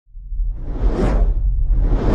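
Cinematic intro sound effect: a whoosh that swells and fades about a second in, with a second whoosh building near the end, over a deep low rumble.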